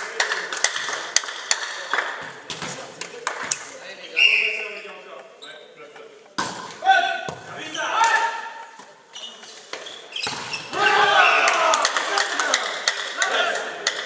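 Volleyball rally in a sports hall: sharp smacks of the ball being hit, short squeaks of shoes on the court floor, and players shouting. The shouting is loudest about eleven seconds in as the point ends.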